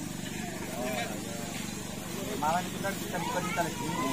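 Motorcycle engine idling steadily, with people talking nearby.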